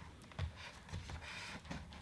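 Faint handling noise of a small cardboard product box turned over in the hands, with a few soft knocks.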